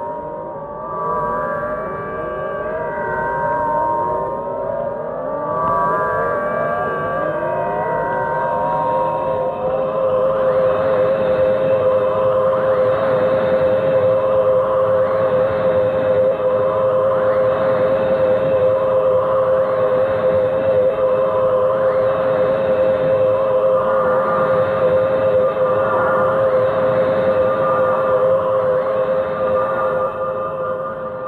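Electronic science-fiction sound effects: a quick run of repeated rising electronic glides, then, from about ten seconds in, a steady, slightly wavering siren-like tone with a whooshing sweep about every two seconds.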